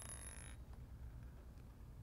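A quick run of small clicks with a thin high ring, from someone fidgeting with a small object, stopping about half a second in; after that only a faint low room hum.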